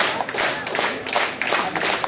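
Wrestling crowd clapping in a steady rhythm, about three claps a second, as a wrestler in the ring claps overhead to lead it, with a few shouts among them.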